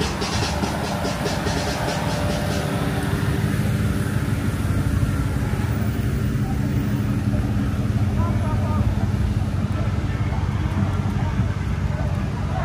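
Cars and SUVs rolling slowly past in a line, a steady low engine and tyre rumble, with voices faintly behind.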